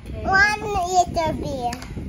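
A young child's high voice in a wordless, sing-song vocalisation, gliding up and down for about a second and a half.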